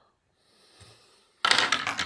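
Small metal fly-tying tools clattering, a quick run of clicks about one and a half seconds in.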